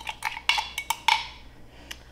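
A glass cup knocking repeatedly against the rim of an air fryer's pan as the last of the taco sauce is emptied out. There are about half a dozen quick, irregular knocks, some with a brief glassy ring, then a single knock near the end.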